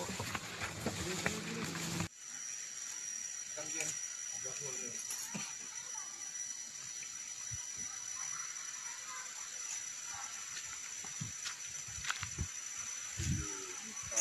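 Car cabin noise for about two seconds, then a steady high-pitched drone of forest insects with faint voices in the distance.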